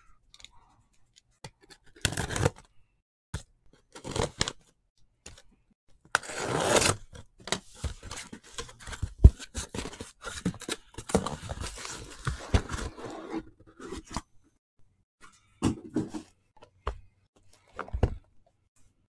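A cardboard shipping case being torn open and unpacked: ripping of tape and cardboard in irregular bursts, with scrapes and knocks as the boxes inside are pulled out and set down. The longest tearing noise comes about six seconds in, and a sharp knock a few seconds later is the loudest single sound.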